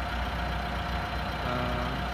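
Steady low mechanical hum with a faint constant whine, of the kind an idling engine makes. A faint voice murmurs briefly near the end.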